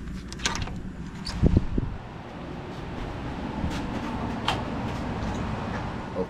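A shed door's round knob turning and its latch clicking, then a heavy low thump about a second and a half in as the door is opened, followed by a steady rushing noise.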